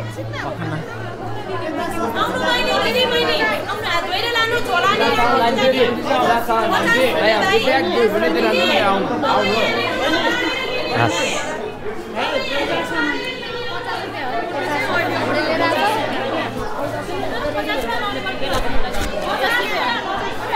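Chatter of several people talking at once in a busy market street, with music playing underneath and a steady low hum.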